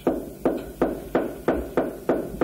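Steady rhythmic knocking, about three sharp strikes a second.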